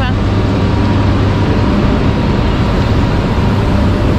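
Steady loud noise and low hum from electric locomotives standing at the platform with their cooling blowers running, with faint steady whines above the hum.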